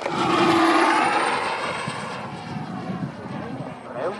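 Wemotec electric ducted-fan impeller of a speed model plane making a high-speed pass: a rush of fan noise swells to its loudest about half a second in and then fades away, with a high whine dropping in pitch as the plane goes by.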